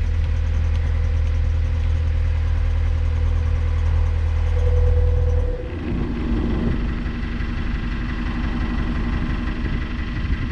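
Narrowboat diesel engine running steadily with a deep hum. About halfway through, its note changes abruptly: the deep hum drops away and a lighter, higher chug takes over.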